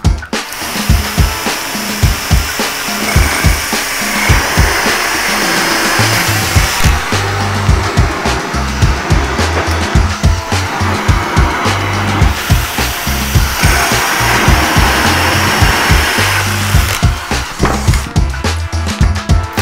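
Two cordless drills boring holes in a wooden board with hole saws, one a bi-metal hole saw and one a Pro-Fit hole saw, the cutting noise coming in several stretches as hole after hole is cut. Background music with a steady beat plays under it.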